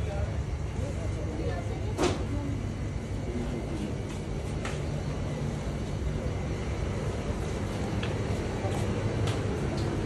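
Steady low rumble of background noise with faint voices murmuring, and a single sharp click about two seconds in.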